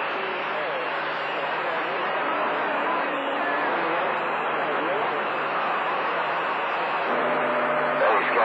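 CB radio receiver on channel 28 hissing with static between skip transmissions, faint garbled voices of distant stations fading in and out under the noise. A low steady tone joins the static near the end.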